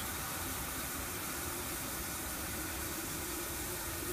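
Water from a garden hose running into a watering can: a steady hiss.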